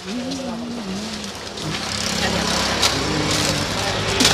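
A motor vehicle engine runs with a steady low rumble that grows louder in the second half, over indistinct voices.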